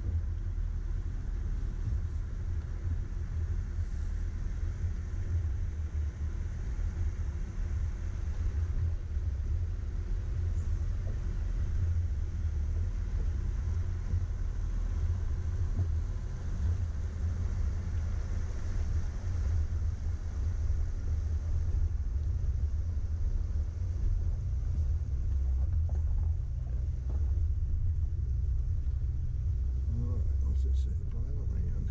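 Low, steady rumble of an off-road vehicle's engine and tyres moving slowly over a rocky mountain trail.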